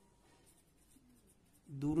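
Ballpoint pen writing on paper: faint, soft scratching strokes. A man's voice starts near the end.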